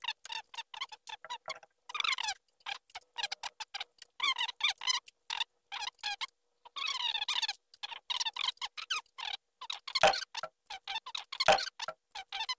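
Metal squeaking from an aluminium scrim frame and its steel pivot brackets being worked by hand: many short squeaks in quick succession, with two knocks near the end.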